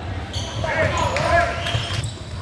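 Indoor basketball game sounds in an echoing gymnasium: a few short squeaks of sneakers on the hardwood court near the middle, over the ongoing din of voices and ball play.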